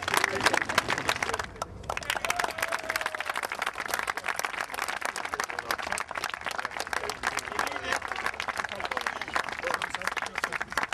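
A crowd applauding, with a steady patter of many hands clapping and voices mixed in. The clapping breaks off for a moment about one and a half seconds in, then carries on.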